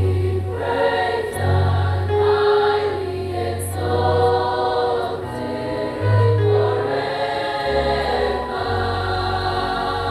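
Church choir singing in several parts at Mass, over sustained low bass notes that change every second or two.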